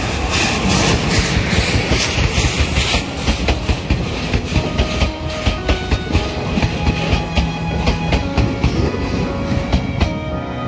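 Steam locomotive C11 325 passing close by with its passenger coaches. A loud rush of noise as the engine goes past in the first three seconds gives way to a fast, regular clickety-clack of the coaches' wheels over the rail joints, about three clacks a second.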